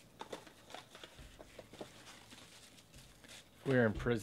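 Clear plastic wrapping crinkling and crackling faintly in scattered bursts as it is pulled off a sealed trading-card box. A man's voice starts near the end.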